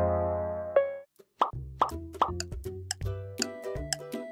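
A held synth chord fades out, then after a brief gap three quick plopping sound effects lead into upbeat background music with a steady beat.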